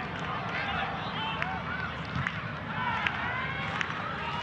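Live soccer pitch sound: players shouting and calling to each other over a steady ambient hiss, with a few sharp knocks of the ball being kicked.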